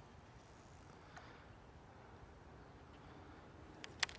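Near silence: faint outdoor background hiss with one soft tick about a second in.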